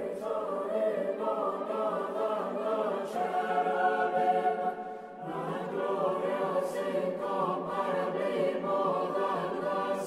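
Choral music: a choir singing sustained chords, with a short dip and a new phrase entering about five seconds in.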